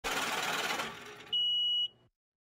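Animated intro sound effects: a rush of noise for about the first second, fading out. Then, about a third of the way after it, a single steady high beep lasting about half a second that cuts off cleanly.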